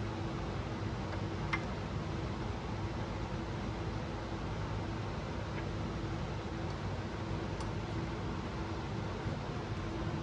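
Steady hum and hiss of workshop room noise, with a few faint light clicks of metal parts as a camshaft is handled and set into the cylinder head.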